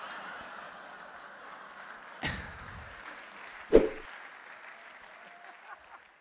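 Audience applauding and laughing, the sound slowly dying away toward the end, with two short sharp sounds about two and four seconds in, the second the loudest.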